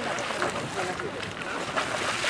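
Bulger's Hole Geyser erupting: water bursting up from its vent and splashing back into the pool in a steady, churning run of splashes.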